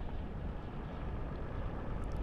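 Steady low rumble of a vehicle driving on cracked asphalt: engine and tyre noise with no sudden events.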